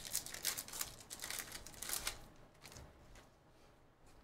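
Wrapper of a baseball card pack being torn open and crinkled by hand: a quick run of crackling tears for about the first two seconds, then fading to faint rustles as the cards come out.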